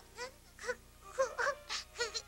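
A baby's voice: about five short, high cries, each rising and falling in pitch, with brief pauses between.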